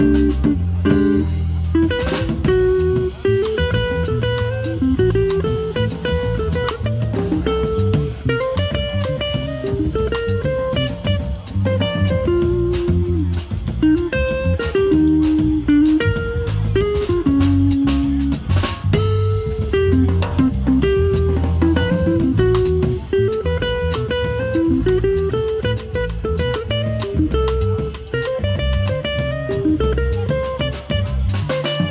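A live jazz trio of electric guitar, electric bass and drum kit playing steadily. A single-note melody line moves over the bass, with cymbal and drum strokes throughout.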